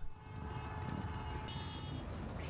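Outdoor street noise with a steady low rumble, as of vehicles in a street parade.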